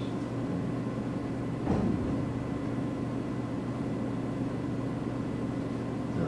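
Steady low mechanical hum of the room, with a faint steady whine above it and one short brief sound a little under two seconds in.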